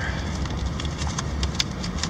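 Steady low rumble of a 2003 Ford Explorer Sport Trac heard from inside the cabin as it drives slowly, with a few faint clicks.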